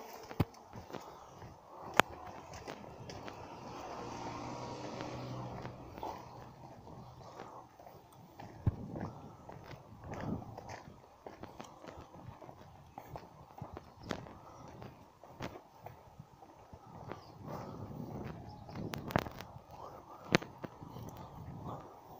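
Footsteps on pavement with scattered knocks and rubs from a hand-held phone, at a low level. A steady low hum rises for a couple of seconds about four to six seconds in.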